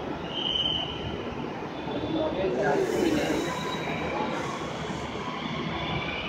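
Electric metro train running along a station platform, a steady rolling rumble with a brief high wheel squeal about half a second in and again near the end. Voices are heard over it.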